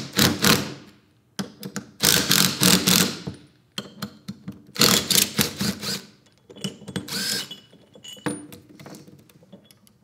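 Cordless impact driver hammering in several short bursts as it backs out the end-cap bolts of a pneumatic rack-and-pinion actuator, worked side to side so the spring pressure is not all on one side. A few lighter knocks and clicks follow near the end.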